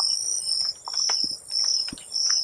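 Insects chirping in the field margin: a regular string of short high-pitched pulses, about three a second, over a fainter steady high whine.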